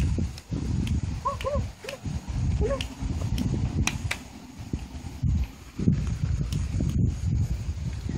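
Hound puppies whimpering: about four short rising-and-falling whines between one and three seconds in, over a low rumble, with a few sharp clicks.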